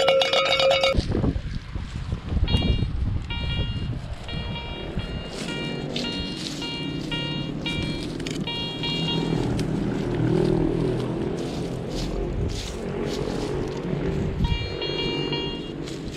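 An old metal animal bell (cincerro) being rung, with a clinking ring for about the first second. After that, background music with a repeating pattern of short high beeps.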